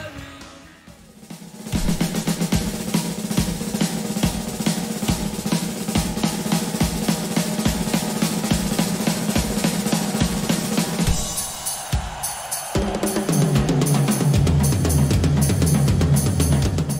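Acoustic rock drum kit played solo: after earlier music fades, a fast, dense run of snare and tom strokes over bass drum hits starts about two seconds in. Around eleven seconds in the playing changes, with more cymbals over deep tom tones.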